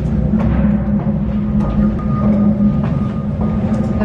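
Wooden wine barrels being rolled across a concrete cellar floor: a loud, continuous low rumble with a few faint knocks.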